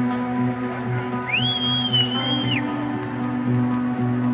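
Live rock band music heard from a stadium crowd: a soft passage of steady held keyboard tones over a low pulse. In the middle a single shrill whistle from the crowd rises, holds for about a second and drops away.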